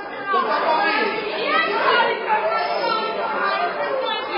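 Crowd chatter: many voices talking over one another in a reverberant room, none clearly picked out.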